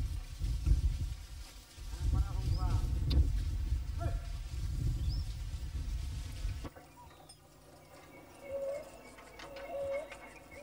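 Outdoor field ambience: a low wind rumble with a few faint passing calls, which cuts off abruptly about seven seconds in. After that it is quieter, with a few short, low, pitched calls.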